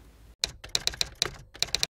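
Typing sound effect: a quick run of about a dozen sharp, keyboard-like clicks over a second and a half, cutting off abruptly.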